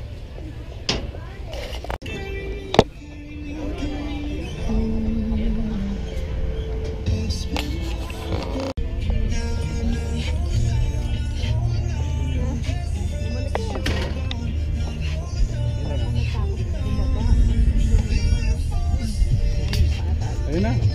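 Background music: a melody of held notes over a steady bass line, with a few sharp clicks.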